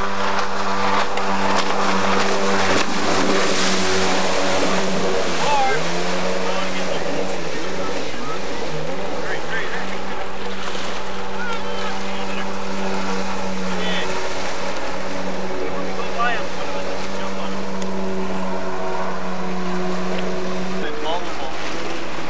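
Jet ski engine running at a steady pitch, wavering a little in the first half, over the hiss of water spray; the engine note stops about a second before the end.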